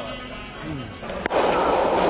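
Background music, then a sudden sharp crack just over a second in, followed by a loud, steady rushing noise with a man's voice over it.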